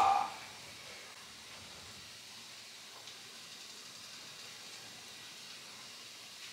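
Faint, steady hiss of stovetop cooking: mushrooms and onions sautéing in melted butter in a stainless steel pan, beside a pot of pasta water at the boil.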